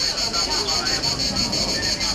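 A steady, high-pitched pulsing buzz, about eight pulses a second, with people's voices talking under it.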